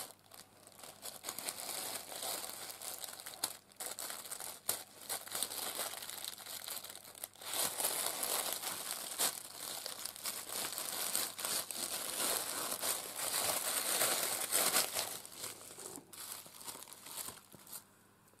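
Tissue paper crinkling and rustling as it is unwrapped by hand, busiest in the middle and dying away near the end.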